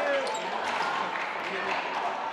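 A few sharp knocks of a squash ball off racquet, wall and floor, ringing in the enclosed court, over faint background talk.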